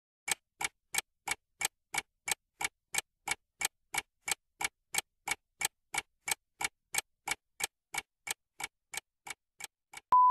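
Clock-tick sound effect for a quiz countdown timer: evenly spaced sharp ticks, about three a second, growing a little fainter near the end.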